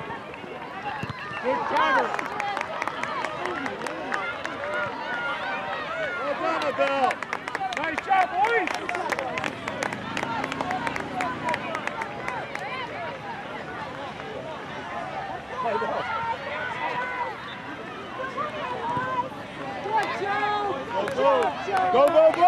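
Indistinct shouts and calls from players and sideline spectators at a youth soccer match, rising and falling, with no clear words.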